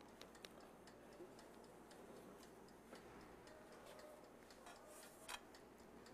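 Faint ticking of the mechanical timer dial on a red countertop electric pizza oven, running after being wound to about five minutes while the oven heats, with one slightly louder click near the end.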